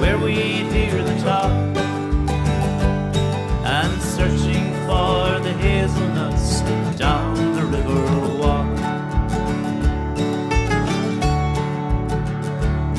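Acoustic folk band playing an instrumental break without singing: acoustic guitars with piano, over a regular bass line.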